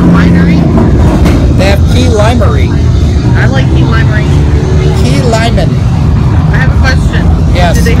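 Indistinct voices talking over a loud, steady low rumble.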